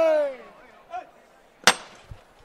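A man's drawn-out shout fades over the first half second. Near the end comes a single sharp metallic knock with a brief ring: the capataz striking the llamador, the knocker on the front of a Holy Week float, the signal for the bearers underneath to lift it.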